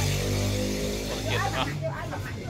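A low steady motor hum, with a person's voice speaking briefly about a second and a half in.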